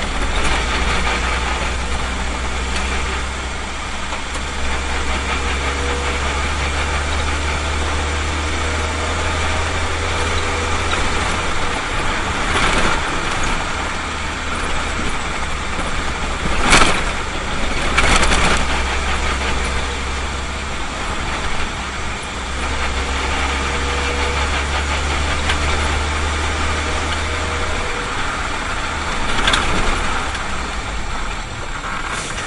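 Minibus engine drone and road noise heard from inside the cab while driving, with a few sharp knocks, the loudest about 17 seconds in.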